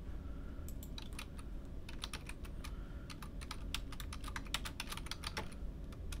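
Typing on a computer keyboard while entering a username and password into a login form. A short burst of keystrokes about a second in, a pause, then a longer run of quick keystrokes that stops shortly before the end.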